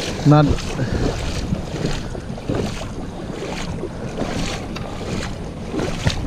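Wading footsteps splashing through shallow creek water, a splash about every half second to a second, under steady wind noise on the microphone.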